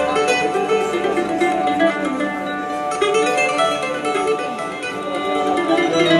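A traditional Arab-Andalusian ensemble playing live: plucked ouds and qanun with bowed violins, a dense, continuous music with many notes sounding together.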